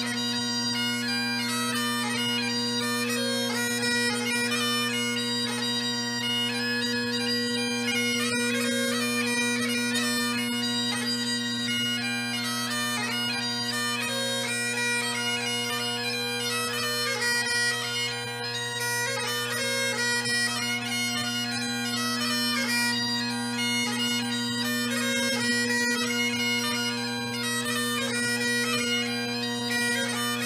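Great Highland bagpipes playing a tune over their steady drones, without a break.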